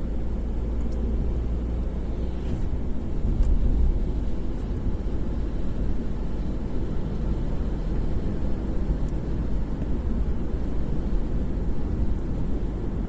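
Steady low rumble of a car's engine and tyres on a wet road, heard from inside the cabin, with a brief swell about three and a half seconds in as an oncoming truck passes.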